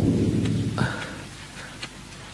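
A thunder sound effect: a loud, low rumble, already under way, that fades away over the first second and a half.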